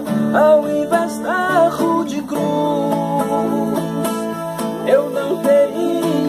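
Viola caipira and acoustic guitar playing together in a Brazilian caipira duet, plucked and strummed, with a man's singing voice carrying the melody in phrases early on and again near the end.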